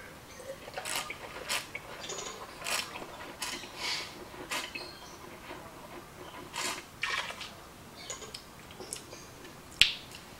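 A wine taster slurping a mouthful of Chardonnay, drawing air through it: a string of short, hissy slurps and sucks, with a sharper one near the end.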